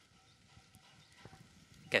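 A brief pause in a man's speech, filled only by faint outdoor background and a few faint taps; his voice resumes near the end.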